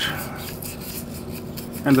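Cotton swab scrubbing the inside of a Toyota Corolla throttle body's bore: a scratchy rubbing against the metal, with a spoken word near the end.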